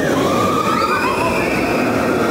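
Tron Lightcycle Run roller coaster train running along the track overhead: a loud, steady rush with faint wavering whines above it.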